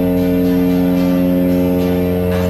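A small twin-engine propeller aircraft's engines and propellers running under power for takeoff, a steady, unchanging drone heard from inside the cabin.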